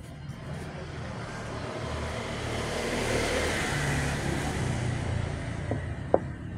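A motor vehicle passing by, its noise swelling to a peak midway and fading away again.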